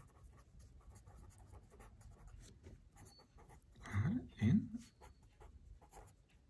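Felt-tip pen writing on paper: faint, quick scratching strokes. About four seconds in, two short rising voice-like sounds stand out above the writing.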